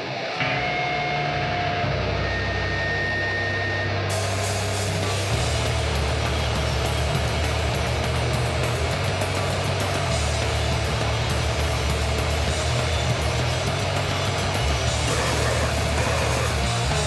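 Crustgrind/thrash punk band playing: a distorted electric guitar riff, joined by a heavy low end about half a second in and by drums with crashing cymbals from about four seconds, after which the full band plays on loudly.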